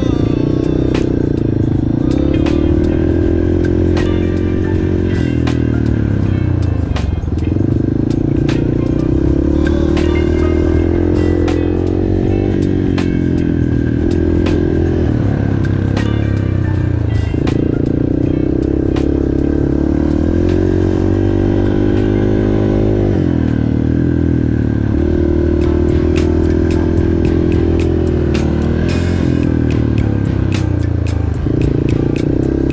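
Yamaha TT-R230 dirt bike's single-cylinder four-stroke engine, heard close up from the rider's seat. It revs up and falls away with the throttle, dropping off roughly every five seconds as the rider shifts or rolls off between the track's bumps and turns.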